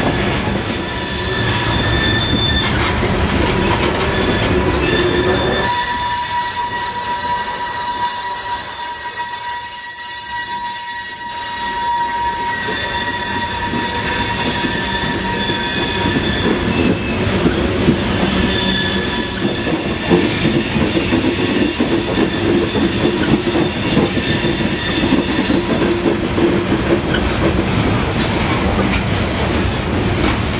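A CSX freight train's cars rolling past close by, with a steady rumble and a high-pitched steady wheel squeal through the first half. The squeal fades after about sixteen seconds, returns more faintly, and sharp wheel clicks over the rail joints come through in the second half.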